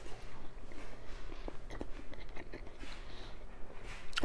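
A man chewing a bite of sous vide chuck roast dressed with demi-glace, with faint soft clicks, over a low steady hum.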